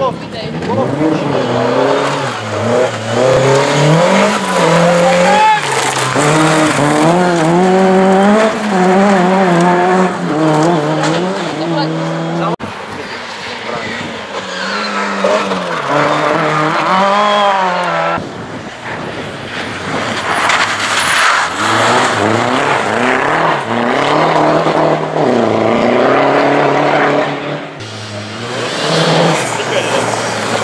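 Rally car engine revving hard through corners, its pitch climbing and dropping with throttle and gear changes, with some tyre and gravel noise; the sound breaks off abruptly a few times where separate passes are joined.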